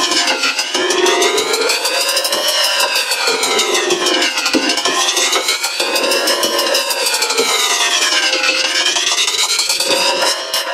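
An electronic siren-like wail that slowly rises for about two seconds and falls for about two, over and over, with a fast buzzing pulse running through it, over a lower, shifting droning layer.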